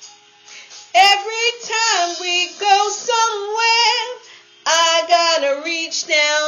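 A woman singing R&B with no accompaniment, her voice sliding between notes in long phrases. After a quiet first second she sings one phrase, pauses briefly about four seconds in, then starts another.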